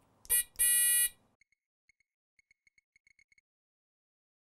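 littleBits buzzer module beeping with a high-pitched electronic tone: a short beep, then a steady beep of about half a second that stops about a second in, followed by a few very faint short pips.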